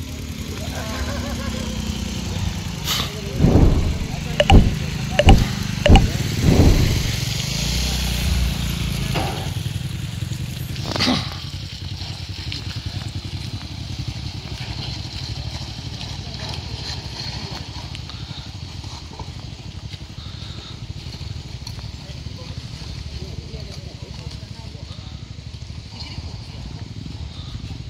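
Steady low rumble of vehicle and construction-machinery engines, with a few loud low thumps between about four and seven seconds in and a sharp knock about eleven seconds in.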